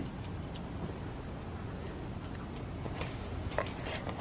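A few faint, irregular snips of grooming scissors trimming a puppy's leg hair, over steady low background noise.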